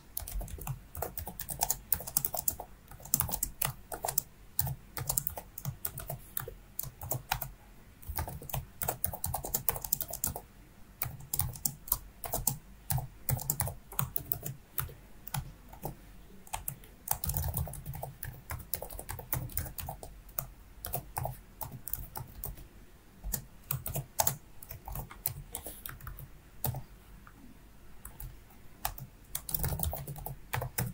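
Computer keyboard typing in irregular bursts of key clicks with short pauses.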